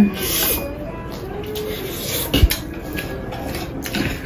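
Mouthful of fried noodles being slurped and eaten, with a single sharp knock of a utensil on the table or plate about halfway through.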